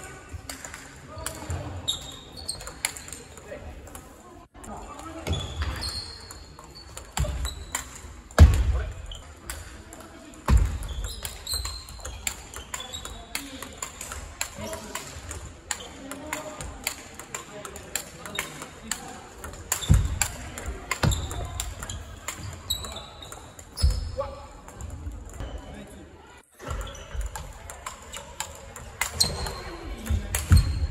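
Large-ball table tennis rallying: the ball clicks repeatedly off the paddles and table, with a few heavier thumps, amid the chatter of a busy sports hall.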